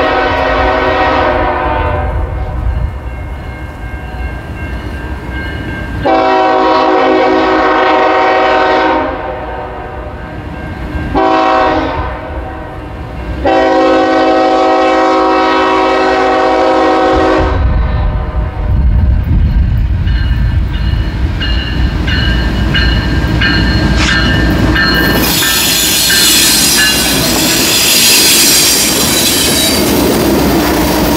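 CN freight locomotive's horn sounding the grade-crossing signal: the end of one long blast, then long, short, long. Then the diesel locomotives rumble past close by, with a crossing bell ringing, and the loud rush of wheels on rail as the cars roll by.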